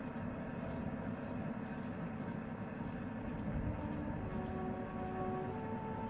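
Steady low rumble of a moving vehicle's road noise, with a few sustained musical notes coming in from about halfway through.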